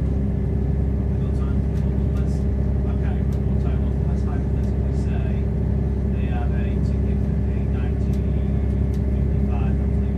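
Steady rumble and drone inside the passenger saloon of a moving Class 170 Turbostar diesel multiple unit, from its underfloor diesel engine and the wheels running on the rails.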